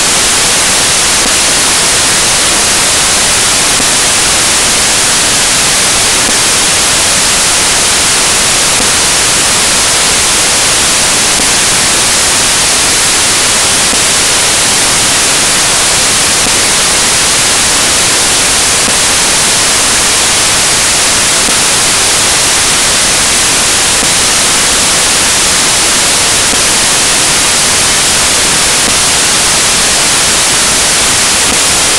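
Loud, steady static hiss like white noise, unchanging throughout and strongest in the high end.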